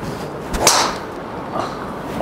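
TaylorMade Qi10 MAX driver swung down and striking a golf ball: one sharp, loud hit about half a second in.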